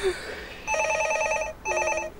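A telephone ringing with a fast warbling trill: one ring, then a second that starts about a second and a half in.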